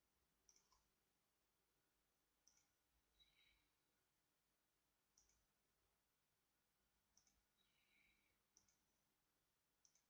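Near silence with faint computer mouse clicks, about one every two seconds, and two brief faint rustles.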